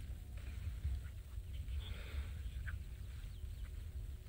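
Faint outdoor bird calls, a few short chirps and honk-like calls, over a steady low rumble.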